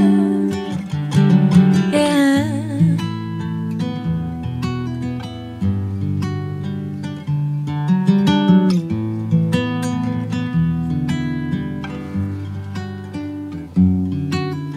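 Song music: a sung note with vibrato trails off in the first few seconds, then an instrumental passage of picked acoustic guitar notes over a bass line.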